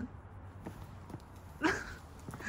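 A dog's claws tapping on brick paving as it hops and shifts on its hind legs, with one short, louder sound about one and a half seconds in.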